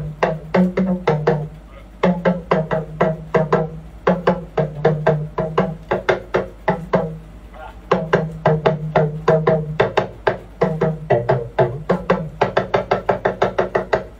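Hourglass talking drum played in quick phrases of sharp strokes, about five to six a second, with short breaks between phrases. Its low pitch bends up and down as the tension cords are squeezed, dipping lower near the end.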